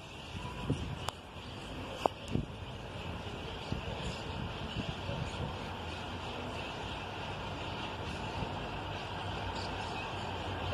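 Distant diesel locomotive-hauled passenger train approaching: a low, steady rumble that slowly grows. A few light clicks in the first two seconds or so.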